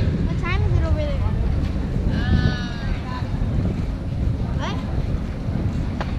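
Voices calling out, without clear words, including one long drawn-out call about two seconds in, over a low rumble of wind on the microphone.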